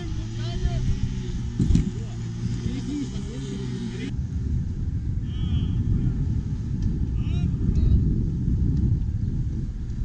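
Men's voices outdoors with a sharp knock a little under two seconds in. After an abrupt change about four seconds in, a dense low rumble fills the rest, with a few short high calls over it.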